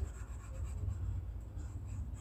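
Faint rubbing and scratching of a computer pointing device being dragged to paint brush strokes, over a steady low hum.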